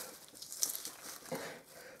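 Thin plastic bag rustling softly in a few short bursts as it is handled.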